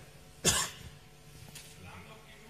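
A single short cough in a conference hall.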